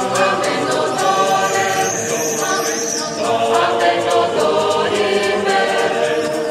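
Mixed choir of men's and women's voices singing in harmony, holding long sustained chords.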